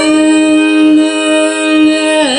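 Carnatic music in raga Saveri, voice and violin together, holding a single note steady without ornament.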